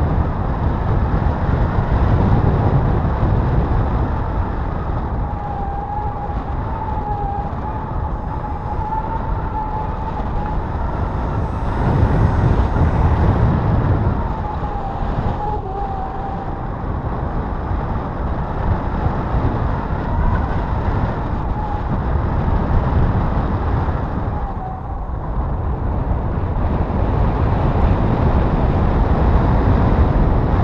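Wind buffeting the action camera's microphone in flight under a paraglider: a loud, uneven low rumble that swells and eases every few seconds.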